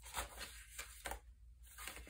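Paper pages of a handmade junk journal being turned by hand: a few brief, soft rustles, the clearest one just after the start, over a low steady hum.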